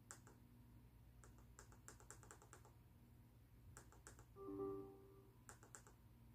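Faint clicking of laptop keys, in scattered runs of quick taps. A short tone sounds about four and a half seconds in, lasting under a second.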